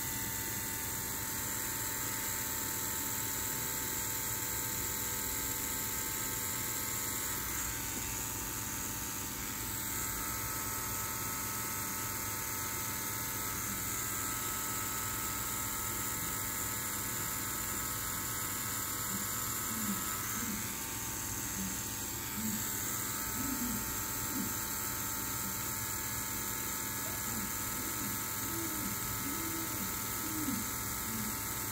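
Rotary tattoo machine running steadily with a constant electric hum as the needle works ink into the skin.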